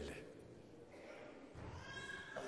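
A pause in a man's speech: faint room tone, with the drawn-out end of his last word right at the start and a faint voice-like sound near the end.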